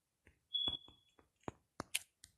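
Faint taps of typing on a phone's touchscreen keyboard, several short clicks in uneven succession, with a brief high tone about half a second in.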